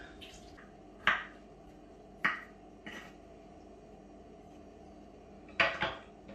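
Kitchenware being handled on a counter: a few short, sharp knocks and clinks of bowls and a cutting board being set down, the loudest a double knock near the end.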